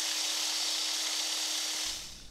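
Steady hiss with a faint constant hum from a light aircraft's radio and intercom headset feed. The hiss cuts off shortly before the end.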